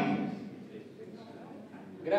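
The closing chord of a Sardinian canto a tenore quartet, four men's voices, cuts off and dies away in the hall's echo over about half a second, leaving a hushed room with faint voices.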